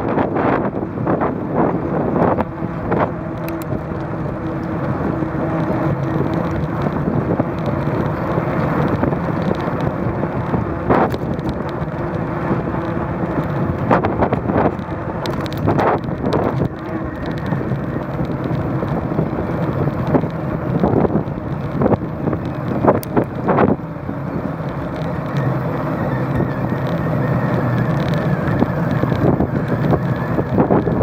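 Riding noise of a bicycle on an asphalt street: a steady rumble of tyres and wind on the bike-mounted microphone, broken by frequent short clicks and rattles as the bike goes over bumps.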